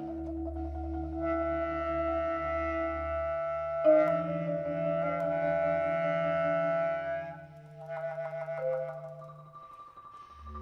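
Contemporary art music: sustained clarinet notes layered in several held pitches over a low steady tone. A sharp accented attack comes about four seconds in, and the texture thins to quieter, sparser notes near the end.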